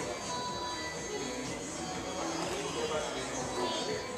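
Background music playing, with faint voices underneath.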